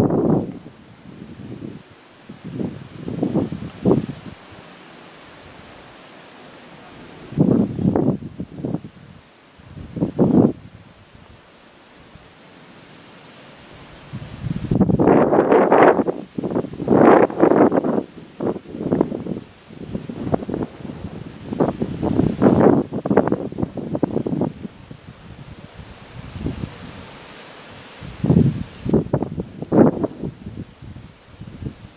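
Wind buffeting the microphone in irregular gusts: a few short bursts, then a long gusty stretch through the middle, over a steady low hiss.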